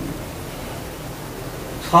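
A pause in speech filled by a steady, even background hiss. A man's voice resumes near the end.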